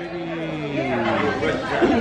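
Several people talking over one another: indoor party chatter.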